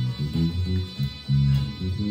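Home-built electric bass with brand-new DR Hi-Beam strings, fingerpicked through a small Fender practice amp set flat with the tone knob rolled right off. It plays a soul bass line of short notes with one longer held note about halfway through, over the intro of the recorded song it is covering.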